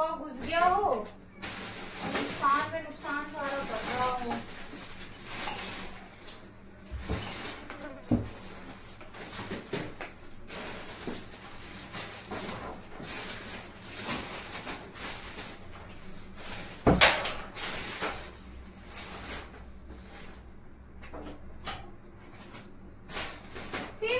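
Rustling and clattering of belongings being packed into a steel trunk, with scattered knocks as things are set down. The loudest is a sharp knock about two-thirds of the way through.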